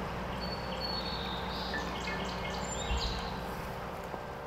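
Birds chirping and calling in short high notes over a steady low background hum.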